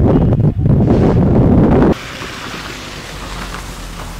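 Wind buffeting the microphone with a loud, low rumble that cuts off abruptly about halfway through, leaving a quieter, steady outdoor hiss.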